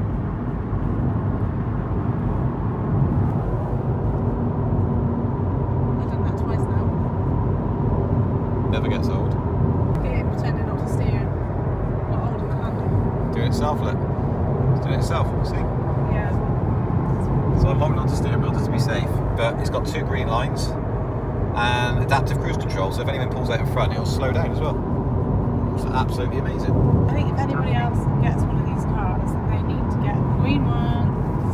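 Steady road and tyre rumble inside the cabin of a Honda e electric car at speed on a dual carriageway, with no engine note.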